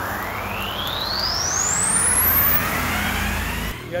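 Synthetic riser sound effect: a single tone glides steadily upward over a rushing noise until it passes out of hearing, with a low steady hum underneath. The whole sound cuts off suddenly shortly before the end.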